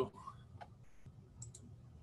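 A few light computer clicks, one about half a second in and a quick pair about a second and a half in, made while switching from one program window to another.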